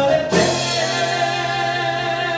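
Live acoustic band music: a man singing one long held note over acoustic guitar, with a drum hit just before the note begins.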